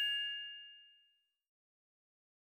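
Bell-like chime of a logo jingle ringing out, several clear high tones fading away within the first second, then silence.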